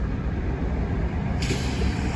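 Wind buffeting the microphone outdoors: a loud, uneven low rumble under a rushing hiss, which grows brighter about two-thirds of the way in.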